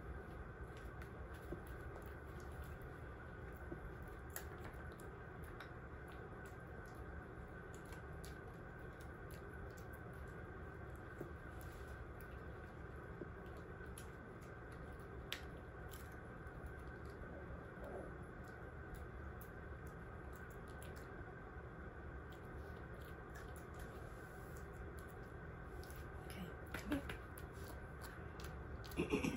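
Quiet room tone with a steady low hum, broken by faint scattered clicks and rustles, with a few louder knocks and rustles near the end.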